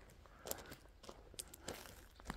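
Faint crunching footsteps on gravel, a few soft, irregular steps against low background hum.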